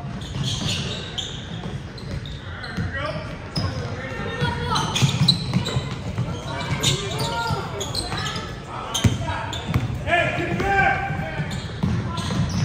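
Basketball game sound in a large, echoing gym: a basketball bouncing on the hardwood floor amid calls and shouts from players and spectators. It gets busier partway through as play runs up the court.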